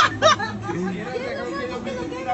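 People's voices: a brief loud exclamation right at the start, then quieter chatter of several people.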